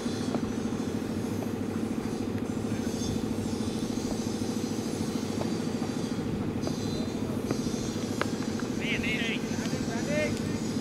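A steady low drone runs throughout. Near the end comes a single sharp crack as the ball hits the stumps, followed about a second later by high-pitched shouts of celebration.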